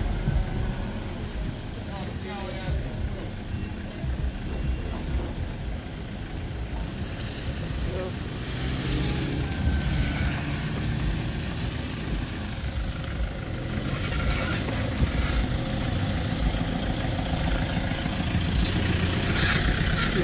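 Slow stream of cars, vans and pickups passing close by on a wet, broken road: engines running at low speed with tyres rolling through mud, puddles and loose gravel.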